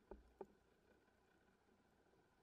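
Near silence underwater, broken by two faint short knocks about a third of a second apart near the start.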